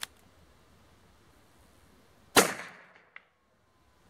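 A single .45 Colt revolver shot about two and a half seconds in, sharp and loud with a short echoing tail, fired over a chronograph. A faint click comes at the start and another just after the shot.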